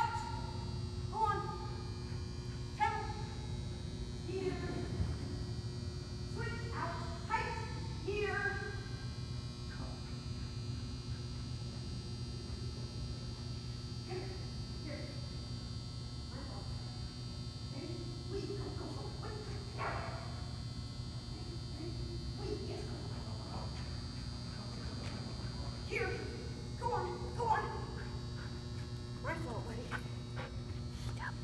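A dog barking in short clusters of sharp barks: several at the start, more about a quarter of the way through, and again near the end. A steady low hum runs underneath.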